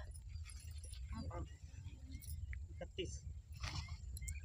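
Faint voices of people talking at a distance, in short broken snatches, over a steady low background rumble.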